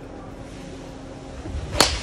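A golf driver striking a teed ball: one sharp, loud crack of impact near the end.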